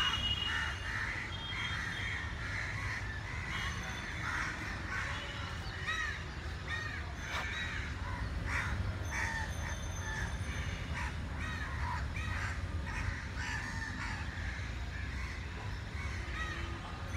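Crows cawing, many short calls overlapping throughout, over a steady low rumble.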